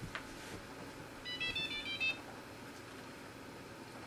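A quick run of short electronic beeps at several different pitches, lasting about a second, a little after a faint click.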